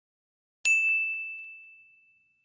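A bell-like ding sound effect, struck once about half a second in, a single clear high tone that rings and fades away over about a second and a half. It marks the subscribe-and-bell notification click.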